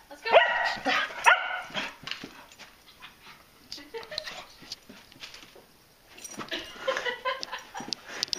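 A dog whimpering and giving short barks in two bouts, one right at the start and another near the end. The dog is scared of a foam puzzle mat standing on edge.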